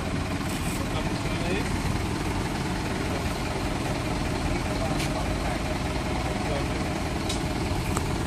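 Tow truck engine idling steadily, with a few short sharp clicks in the second half.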